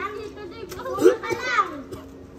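Young children's voices: excited, high-pitched chatter and calls, loudest about a second in.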